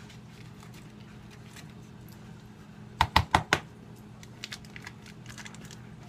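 Kitchen handling sounds at a counter: four quick, sharp clicks a little after halfway, then lighter scattered ticks, over a faint steady hum.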